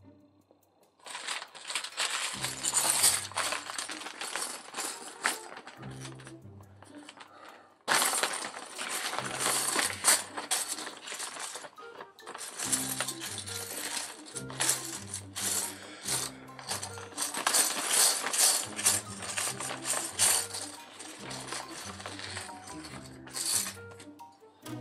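Loose plastic building bricks clattering and clinking as a pile of small pieces is rummaged through, in dense irregular bursts with short pauses, over background music with a stepping bass line.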